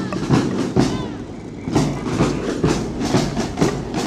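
Marching drum band of children's snare drums and a bass drum beating a quick, steady rhythm, thinning briefly about a second in.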